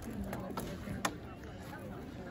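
Quiet background of faint onlooker voices, with a few light clicks and no loud clash.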